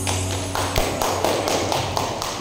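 A quick, even run of light taps, about six a second, starting about half a second in, just after the music has stopped.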